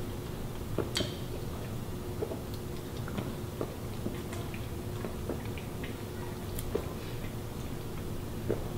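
Two people chugging soda from plastic bottles: scattered faint gulps and small clicks, over a faint steady hum.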